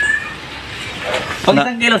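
The end of a drawn-out cat meow, its pitch dropping slightly as it stops, followed by about a second of faint background noise before a man's voice comes in.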